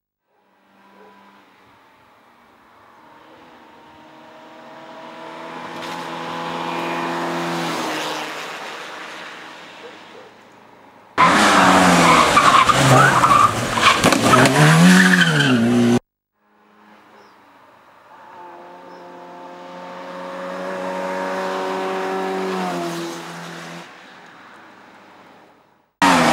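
Fiat Cinquecento hillclimb car's engine at high revs as it climbs the course, swelling as it approaches and fading away. In the middle comes a much louder close pass lasting about five seconds, starting and stopping abruptly, with the engine note rising and falling through the gears. Near the end another run swells up and fades the same way.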